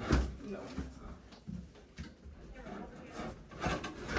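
Knocks and scrapes of a large plastic storage tote being handled against a wooden pull-down attic ladder, with a sharp knock at the start and another near the end.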